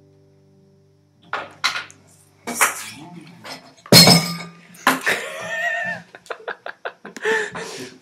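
The last guitar chord dies away, then a drum kit is knocked over: scattered knocks, a loud crash about four seconds in, then clattering and a quick run of small clicks as pieces settle.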